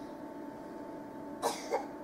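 A person coughing, two short coughs close together about one and a half seconds in, over a low steady room hum.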